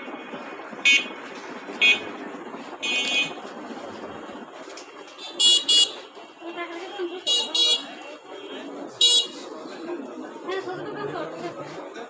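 Short, high-pitched vehicle horn toots, about eight of them, some in quick pairs, over a steady murmur of people talking.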